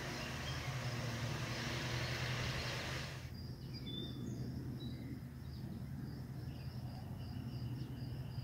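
Rural outdoor ambience. For about three seconds there is a steady rushing noise, then it drops suddenly to a quieter background with birds chirping high over a steady low hum.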